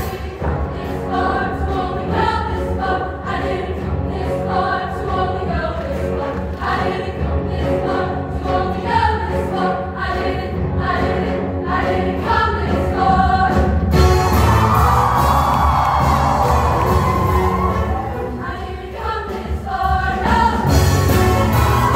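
Women's show choir singing in harmony with a live band accompanying; about fourteen seconds in the music gets louder and fuller.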